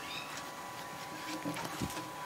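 Faint handling sounds of a cloth tape measure being shifted over stiff fabric on a wooden tabletop, with light ticks over a steady hiss and faint high whine. A brief faint pitched sound comes about three-quarters of the way through, and a short soft thump follows near the end.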